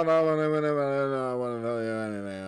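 A man's voice holding one long, wordless vocal sound whose pitch slowly falls.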